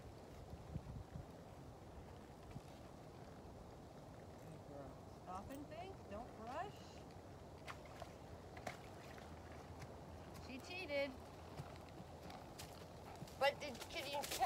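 Faint, distant hoof steps of a horse walking with a rider down into and through a shallow, muddy pond, heard as scattered soft knocks. A faint voice calls a couple of times, and nearer speech begins near the end.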